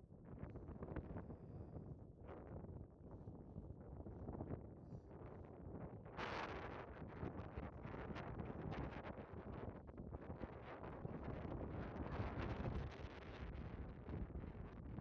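Wind buffeting the phone's microphone in uneven gusts, a low rumbling rush that grows stronger about six seconds in.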